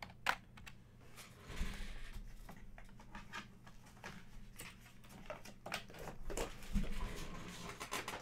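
Hard plastic graded-card slabs handled and set down in a foam-lined box: scattered light clicks and rustles, with a couple of soft thumps.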